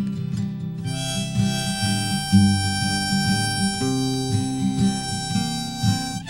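A country-style song played live: an acoustic guitar strummed steadily while a harmonica comes in about a second in with long held notes.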